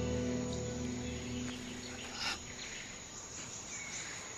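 Jungle ambience of chirping insects and faint bird calls, under a held music chord that fades out about a second and a half in.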